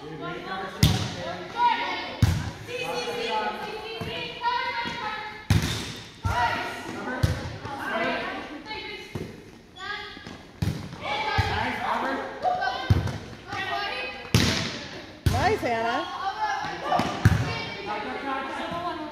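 Volleyballs being hit and bouncing on a hard gym floor: about ten sharp thuds at irregular intervals, echoing in the hall, over ongoing chatter.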